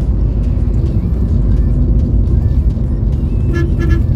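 Steady low road and engine rumble heard inside a moving Maruti Suzuki Ciaz's cabin at highway speed. Near the end a car horn toots twice, briefly.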